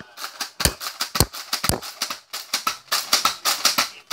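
Plastic Nerf blaster being handled and worked, giving three heavier thumps about half a second apart, then a dense clatter of plastic clicks and rattles.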